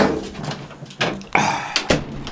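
A door being pushed shut, with a few knocking and rubbing noises and a sharp click near the end.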